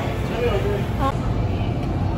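Fast-food restaurant background noise: a steady low rumble with faint voices talking, one briefly about a second in.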